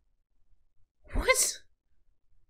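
A single sneeze from a man close to the microphone, one short sharp burst about a second in.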